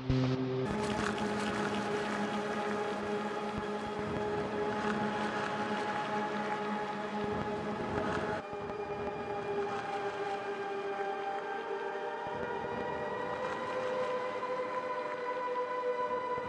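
DIY modular synthesizer with a homemade sampler module playing a dense electronic drone of several steady tones. About half a second in it thickens into a fuller, noisier layer; around 8 s the lowest tone drops out; in the last few seconds some tones glide slowly upward.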